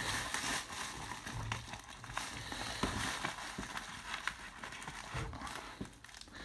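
Bubble wrap and a thin plastic bag crinkling and crackling as they are handled and unwrapped by hand, with many small irregular clicks.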